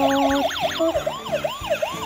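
Battery-powered toy ambulance's electronic siren wailing up and down in rapid cycles, about four a second, over a simple electronic tune from the same toy.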